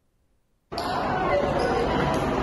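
Near silence, then about two-thirds of a second in, the ambient sound of a crowded indoor hall cuts in abruptly: many people chattering at once with room echo, and a few light knocks.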